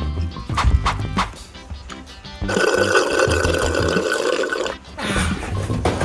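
Background music with a steady beat; about halfway through, a gurgling liquid sound lasts about two seconds, as of juice being gulped down.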